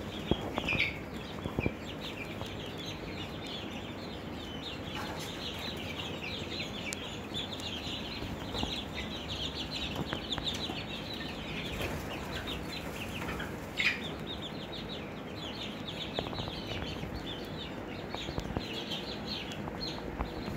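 A flock of five-week-old chicks (Barred Plymouth Rocks, Golden Buffs and Easter Eggers) peeping constantly, many short high peeps overlapping, with one louder falling call about 14 seconds in.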